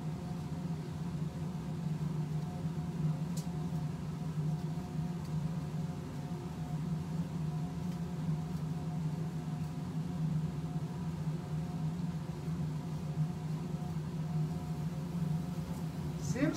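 Steady low mechanical hum with a faint hiss over it, and a single faint click about three seconds in.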